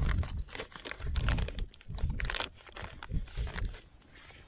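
Plastic salt bag crinkling and crackling in irregular bursts as it is pressed and wrapped by hand around a drainage pipe joint, with low handling thumps.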